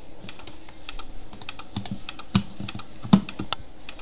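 Rapid, uneven clicking of an electromechanical relay switching a motor-generator test rig in short pulses, about five or six sharp clicks a second, the loudest about three seconds in.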